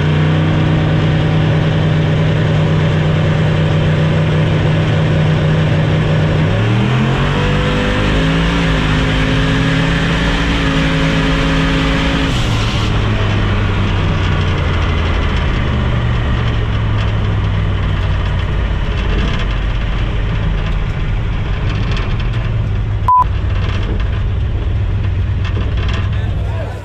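Turbocharged engine heard from inside the cab, running steadily, then rising in pitch around 7 seconds as the revs come up. It holds there for a few seconds, drops back near the halfway point and runs lower for the rest, with one sharp click near the end.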